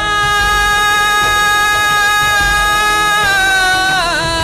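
A male singer holds one long, steady note in a Hindi devotional song (bhajan) to Shiva; the pitch dips slightly near the end. A soft low beat sounds underneath about every two seconds.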